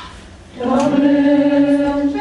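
Several voices singing together in unison on a neutral syllable, a tonal-pattern exercise. After a short pause one long note, sliding up slightly as it begins, is held for over a second.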